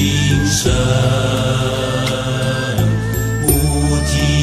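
Buddhist devotional music: a chanted mantra sung over sustained low accompaniment notes.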